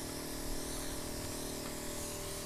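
A small motor running steadily, a constant hum with a hiss over it.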